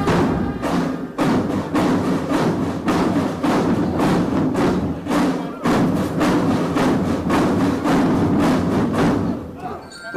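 Military academy marching drum band playing, its drums striking a steady beat about twice a second over the band's sustained tones, easing off near the end.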